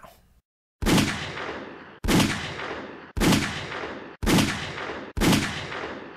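Five 9mm pistol shots from a 3-inch-barrel Sig Sauer P938 firing subsonic 147-grain Winchester Ranger T hollowpoints, spaced about a second apart. Each shot's echo dies away and is cut short by the next.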